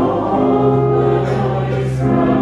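Offertory hymn at Mass: voices singing in unison over organ accompaniment, with long held notes and a sustained bass.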